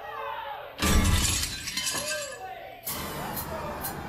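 Intro of a recorded pop song: a loud crash of shattering glass about a second in, with vocal sounds around it. The drum beat with a steady hi-hat starts near the end.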